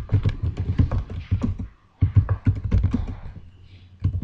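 Typing on a computer keyboard: quick runs of key clicks, with a brief pause a little under halfway through.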